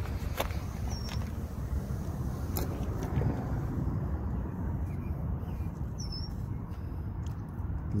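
Outdoor background: a steady low rumble with a few sharp handling clicks, and a bird chirping briefly about a second in and again about six seconds in.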